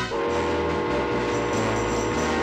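Steam locomotive whistle blowing one long, steady chord that begins just after the start, over the low bass of an orchestral score.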